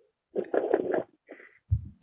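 Muffled voice exclaiming in short bursts, then a low thump just before the end.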